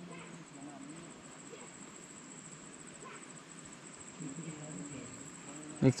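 A steady, very high-pitched insect trill with a fast, even pulse, under faint murmuring voices; a man's voice starts loudly right at the end.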